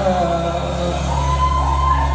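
Live band holding a sustained chord over a steady low bass note, with voices from the crowd singing and calling over it; a higher voice is held for about the last second.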